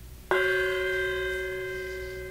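A meditation bell struck once about a third of a second in, then ringing on with several clear steady tones that fade slowly, closing the period of guided silent meditation.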